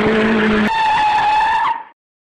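Sound effect of a vehicle's tyres screeching in a hard emergency stop: a wavering squeal that settles into one steadier high screech about two-thirds of a second in, then cuts off sharply near the end.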